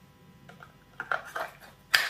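Quiet handling noises: a few short soft knocks and rustles from about one second in, then one sharp click near the end.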